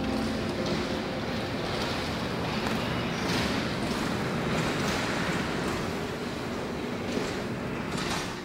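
Three sectional garage doors opening together on their openers: a steady mechanical running noise that fades away as the doors reach the top.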